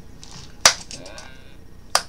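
Two sharp clacks of something hard knocked against a tabletop: a loud one with a brief rattling ring after it, then a smaller one near the end.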